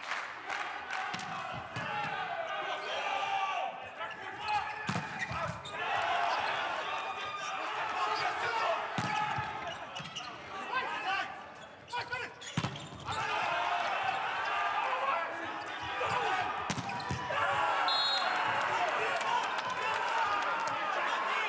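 Volleyball rally in a large, nearly empty indoor hall: repeated sharp smacks of the ball being served, dug, set and spiked, with players' shouts echoing between hits. It ends in excited shouting as a team celebrates winning the point.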